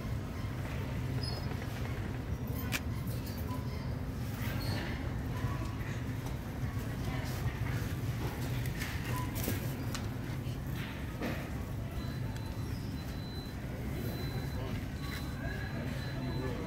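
Supermarket background: a steady low hum with scattered light clicks and rattles, indistinct voices and faint music. A thin, steady high tone joins about three-quarters of the way through.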